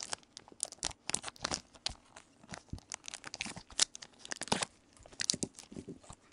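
Gloved hands handling a trading card in a rigid clear plastic holder: an irregular string of short plastic clicks, scrapes and rustles.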